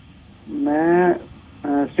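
A caller's drawn-out hesitation vowel over a telephone line, held for under a second and rising slightly, with the first syllable of his answer near the end.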